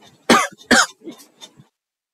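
Two short, breathy vocal bursts from a man, about half a second apart, heard close on a microphone, followed by dead silence.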